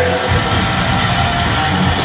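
Heavy metal band playing live and loud: distorted electric guitars, bass guitar and drums in a dense, unbroken wall of sound.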